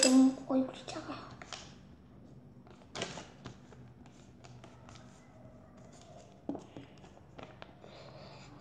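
A child's brief voiced sound right at the start, followed by a few scattered light clicks and scrapes of handling, such as a pen or marker being moved about.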